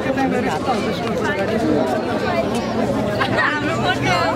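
People talking, several voices overlapping in steady chatter.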